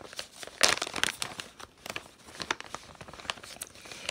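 Clear plastic packaging of a cross-stitch kit crinkling as it is handled and turned over, in irregular crackles with a louder rustle about half a second in.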